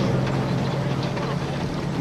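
Military truck engine running with a steady low hum, heard from the back of the moving truck on a TV episode's soundtrack.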